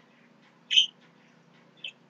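A small bird chirping: two short, high chirps, the first a little under a second in and the second near the end, over a faint steady hum.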